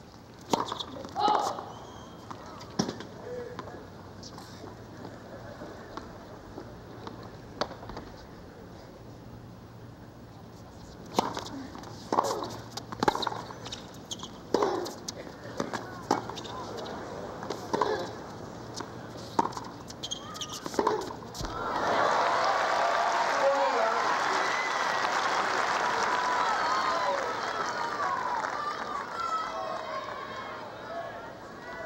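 Tennis balls struck by rackets in a rally, a sharp knock about every second, with a few single knocks near the start. The point ends about two-thirds of the way in and the crowd breaks into loud applause and cheering, which fades near the end.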